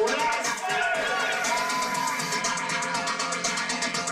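Live synthpunk music played loud: a fast, even electronic beat under a male singer's vocals, with one long held note in the middle.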